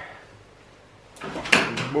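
Quiet room tone for about a second, then a man's voice starts, with one short, sharp knock about one and a half seconds in.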